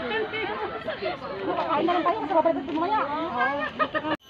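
People talking: continuous chatter of voices, with no other distinct sound standing out.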